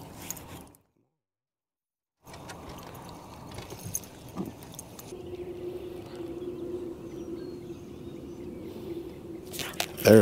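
Quiet ambience in a small boat on open water, broken by a second or so of dead silence about a second in. A steady low hum comes in about five seconds in, with a few sharp clicks just before the end.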